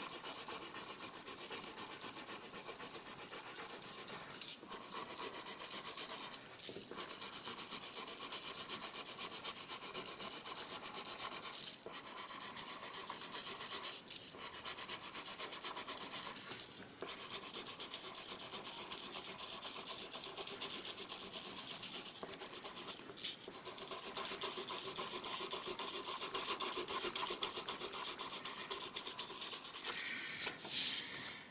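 Colored pencil shading on drawing paper: rapid back-and-forth strokes make a steady scratching, broken by short pauses every few seconds.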